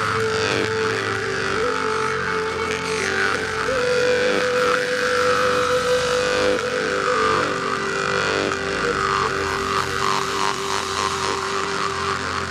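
Sakha khomus (steel jaw harp) being played: a twanging drone whose overtones sweep up and down to shape a melody over the steady fundamental.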